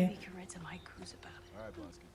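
Quiet dialogue from a TV episode playing low in the mix: short spoken lines, much softer than the nearby talking.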